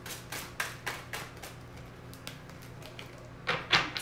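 A tarot deck being shuffled by hand: a run of light card taps about three a second in the first second and a half, softer taps in the middle, then two louder card snaps near the end.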